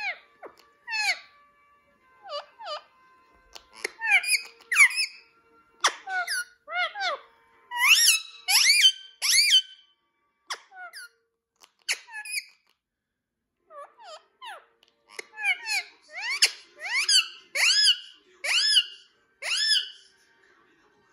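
Rose-ringed parakeet (Indian ringneck) giving a long series of short, shrill squawks in quick runs, with a brief pause about two-thirds of the way through. The calls belong to its courtship display, aimed at its blanket.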